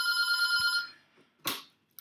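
Computer notification tone, an electronic chime held at a steady pitch for about a second, then fading. A short soft noise follows about a second and a half in.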